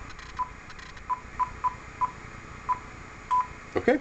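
Icom IC-7000 transceiver's key beeps as a frequency is entered digit by digit: about eight short high beeps, unevenly spaced, the last a little longer as the entry is confirmed.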